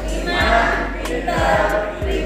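A group of voices singing together over music with a steady beat.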